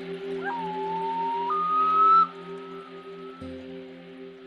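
Common loon wailing over a soft, steady ambient music drone. It is one long call that slides up into a held note, steps up to a higher held note about one and a half seconds in, and fades out a little after two seconds.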